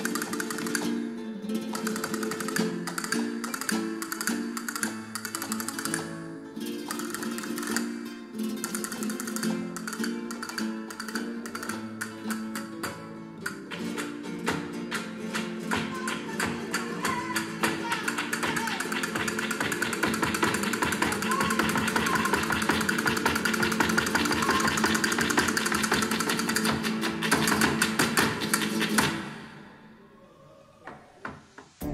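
Flamenco guitar music played back through large floorstanding hi-fi loudspeakers in a show demo room. Rapid plucked runs build into dense fast strumming over the second half, then the music stops abruptly near the end.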